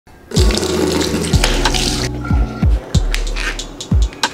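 Water running from a tap into a sink basin for about the first two seconds, over background music with deep bass notes that each drop quickly in pitch.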